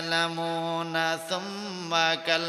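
A man's voice chanting in long held notes, the melodic sing-song delivery used by Bangla waz preachers, with the pitch stepping up briefly a little after a second in.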